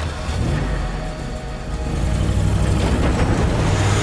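A van's engine accelerating as it drives close past, its rumble and road noise building louder through the second half, over background score music.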